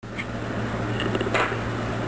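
KitchenAid stand mixer motor running steadily with a low hum, its dough hook turning a thin poolish batter in the steel bowl. A light knock about one and a half seconds in.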